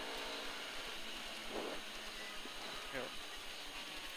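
Onboard sound of a rally Mini's 1440cc KAD 16-valve engine running at speed, a steady drone with road noise under it.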